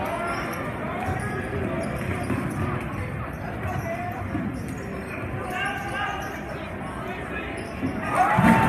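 A basketball being dribbled on a hardwood gym floor, under steady chatter and calls from the crowd and players.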